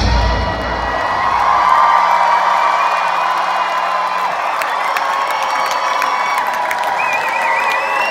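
Rock concert crowd cheering and whooping as the band's final note dies away in the first second. A steady held tone rings on over the cheering, and a wavering whistle rises from the crowd near the end.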